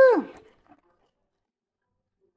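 The end of a long held voice note, sliding down in pitch and cutting off just after the start, then silence.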